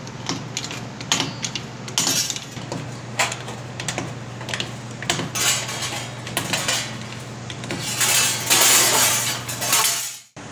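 Beverly throatless hand shear cutting a circle from brass sheet: irregular metallic snips and clinks as the blade bites and the sheet shifts, with a louder stretch of sheet metal rattling and scraping near the end.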